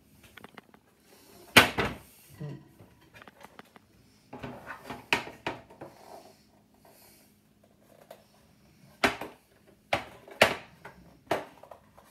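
Hard plastic display-stand parts knocking and clicking as they are fitted together: a sharp knock about one and a half seconds in, a cluster of knocks near the middle, and several more sharp clicks near the end.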